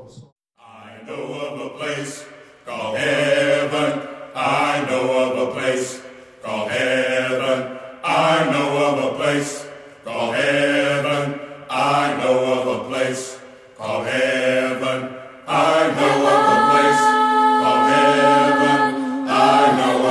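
Congregation singing a hymn a cappella, in phrases a second or two long with short breaths between them, then holding a long chord for the last few seconds.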